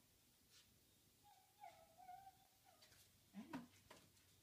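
A faint animal call: one high, fairly steady call lasting about a second and a half, then a short call that bends up and down near the end, with a few soft clicks in between.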